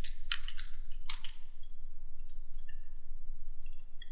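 Computer keyboard being typed: a quick run of about five keystrokes in the first second or so, over a steady low hum.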